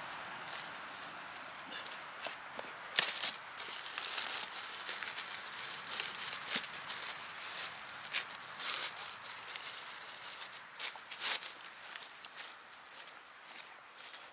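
Dry leaf litter and twigs rustling and crackling under a hand digging mushrooms out of the forest floor, with irregular sharp snaps.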